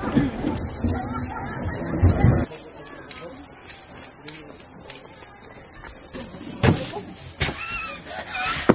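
A steady, high-pitched insect chorus that cuts in about half a second in, with voices underneath for the first couple of seconds and two short knocks near the end.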